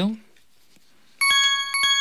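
Bright bell chime used as a quiz cue sound effect, starting about a second in: two strikes about half a second apart, the second ringing on and slowly fading.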